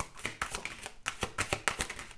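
A deck of tarot cards being shuffled by hand: a rapid, irregular run of dry card clicks and flutters.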